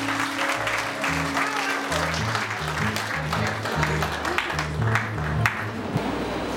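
Congregation clapping and applauding over a church band's bass line, which plays short low notes that step up and down in pitch.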